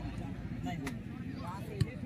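Football crowd talking and calling, with many voices overlapping, and one sharp thud near the end, typical of a football being kicked.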